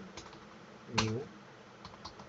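A few scattered keystrokes on a computer keyboard, faint sharp clicks, with one spoken word about a second in.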